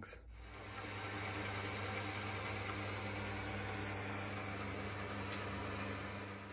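Myford metalworking lathe running steadily: a motor hum with a thin, high steady whine over it, spinning down and fading out near the end.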